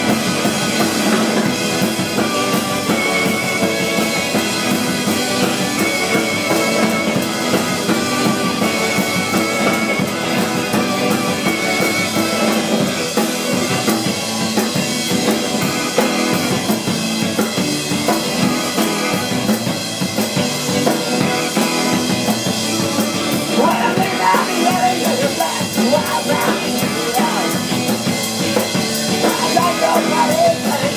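A live garage-punk rock band playing loud and without a break: a driving drum kit and electric guitars.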